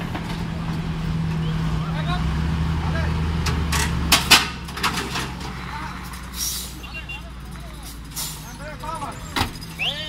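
A heavy truck's diesel engine running steadily, loudest in the first four seconds, with a cluster of sharp knocks about four seconds in and short hisses of air later on.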